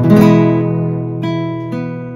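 A chord strummed on a nylon-string classical guitar, left to ring and slowly fade, with two single notes plucked over it a little past one second in and again near the end.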